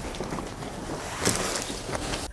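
Steady background hiss with a brief rustle of fabric being handled about a second and a quarter in.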